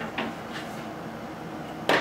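Light handling of a paper strip on a wooden desk, with a faint click early on and one sharp knock near the end.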